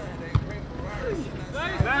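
Two dull thuds of a soccer ball being struck on an artificial-turf pitch, about a second and a half apart, with players' voices calling out around them.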